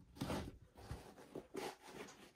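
Faint handling noises of a sneaker: a few short rustles of its laces being pulled loose and soft knocks as the shoe is picked up.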